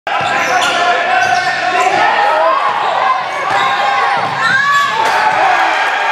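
Basketball dribbled on a hardwood gym floor, with sneakers squeaking and players' voices calling out, echoing in a large hall.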